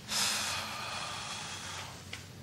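A person's long, heavy breath out through the nose, starting just after the beginning and fading out near the end.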